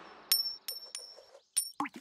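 Cartoon sound effect of a coin clinking as it bounces and falls: about five bright metallic pings, unevenly spaced and getting shorter, then a brief sliding tone near the end.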